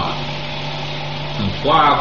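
A steady low hum with hiss, the recording's own background noise, running unchanged through a pause in a man's speech. His voice comes back about a second and a half in.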